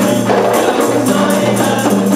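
Rebana ensemble performing an Islamic qasidah song: a group of voices singing over a steady rhythm of hand-struck rebana frame drums.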